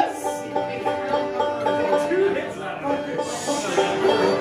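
Bluegrass banjo and fiddle noodling between songs: loose plucked banjo notes and held, sliding bowed notes.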